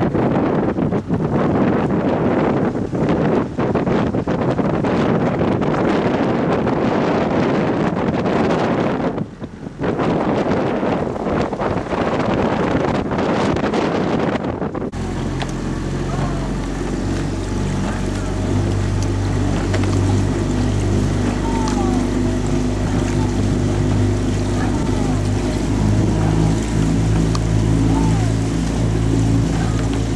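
For the first half, wind buffeting the microphone, with a short lull about nine seconds in. About halfway the sound changes abruptly to a boat's motor running steadily with an even low hum, as the camera follows alongside a rowing eight on the water.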